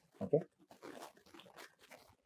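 A man's voice says a short "okay" just after the start, then near-quiet room tone with only a faint soft sound about a second in.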